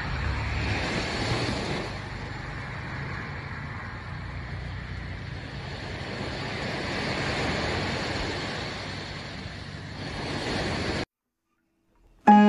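Small waves breaking and washing up a sandy beach: a steady rush of surf that swells and fades in slow surges, cutting off abruptly near the end.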